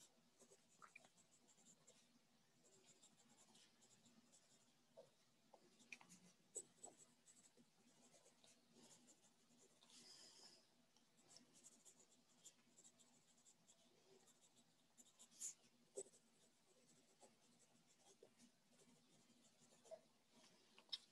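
Near silence with faint scratching of a pen on paper and scattered small clicks, the sound of someone writing a prayer by hand.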